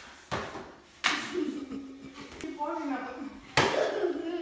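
Three sharp knocks and thumps as a ball, a hockey stick and cardboard goalie pads strike one another and the floor during a save. The first comes just after the start, the second about a second in and the loudest near the end, with voices in between.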